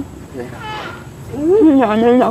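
A woman's voice speaking from about a second and a half in, with a fainter, higher voice-like call a little before it.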